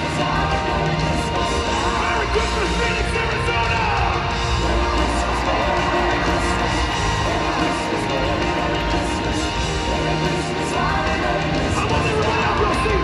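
A rock band playing live in an arena, full band with drums and singing, steady and loud.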